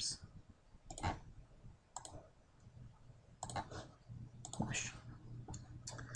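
A computer mouse clicking: a handful of faint clicks at irregular intervals.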